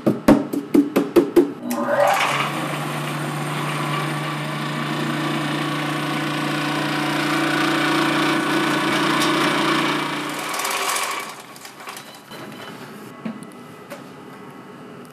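About six quick knocks of a plastic tub against a stainless-steel flour sifter as rice flour is emptied into it. Then the sifter's motor runs with a steady hum for about nine seconds and stops.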